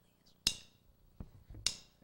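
A drummer's count-in: sharp clicks with a brief ringing, keeping a steady beat. There are two strong clicks with a couple of lighter taps between them.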